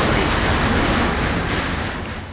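A loud, steady rushing noise, slowly getting quieter toward the end.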